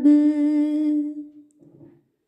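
An unaccompanied female voice holding a long sung note at a steady pitch, fading out about a second and a half in.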